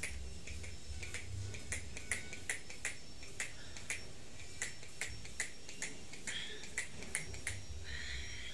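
A run of light, sharp clicks, fairly evenly spaced at about two to three a second.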